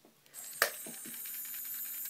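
A small plastic pet figure with a moving part being handled: one sharp click just over half a second in, then a few lighter clicks, over a faint steady hum.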